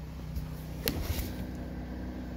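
Steady low mechanical hum with a faint even drone, and a single sharp click a little under a second in, followed by a few soft knocks.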